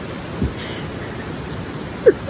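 Steady rushing of a river running close by. A short thump and a brief hiss about half a second in.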